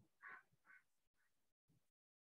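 Near silence: faint, short snatches of sound, one stronger pair in the first second, that switch on and off abruptly.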